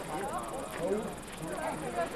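Indistinct, overlapping talk of several people's voices, with no words clear enough to make out.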